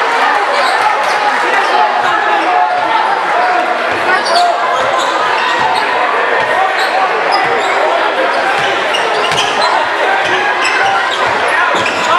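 A basketball dribbling on a hardwood gym floor, with short high sneaker squeaks, over the steady chatter of a large crowd in a gymnasium.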